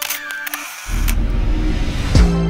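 Edited intro transition sound effects: a sharp click with a short swoosh and pitch sweep at the start, then, just under a second in, a deep, loud bass rumble swells in and holds, leading into the beat.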